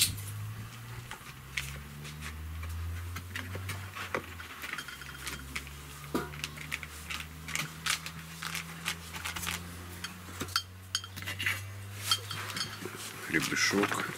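Wired wooden hive frame being set down and shifted into place over a sheet of wax foundation on a wooden board: a scatter of light clicks and taps. A low steady hum runs underneath.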